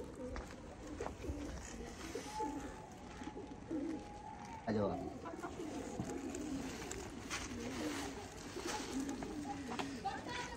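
Pigeons cooing repeatedly in low, wavering calls, with faint children's voices underneath. One louder sound falls sharply in pitch about halfway through.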